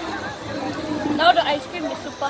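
Background chatter of voices in a busy public space. About a second in there is a brief, high voice that glides up and down.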